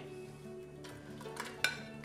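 Sliced carrots being pushed off a plate with a spatula into a stainless steel pot: a few light clinks and knocks in the second half, the sharpest about one and a half seconds in, over soft background music.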